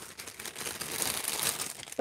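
Clear plastic bag crinkling as it is handled, a continuous run of small crackles.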